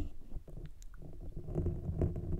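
Plastic claw hair clip rubbed and pressed against a foam-covered microphone: low, muffled rubbing with a few faint ticks, after a sharp click right at the start.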